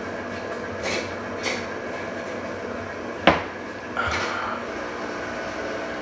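Stand mixer motor running steadily at low speed, its dough hook kneading a stiff pizza dough. About three seconds in comes a single sharp knock.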